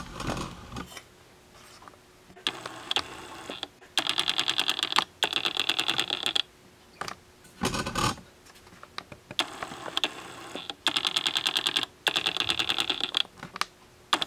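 Rapid mechanical clicking in about five short bursts of a second or so each, roughly a dozen ticks a second, with a couple of dull knocks between them.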